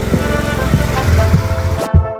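Background music over the noise of motorcycles, a low engine rumble with road noise. The engine and road noise cut off abruptly near the end, leaving only the music.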